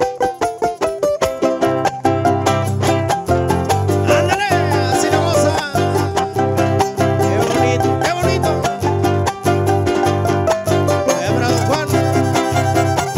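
Live huapango (son huasteco) played by a string trio: fast, rhythmic strumming of a jarana and huapanguera with a violin, and no singing. A deep bass line comes in about two seconds in, and the violin slides through high notes around the middle.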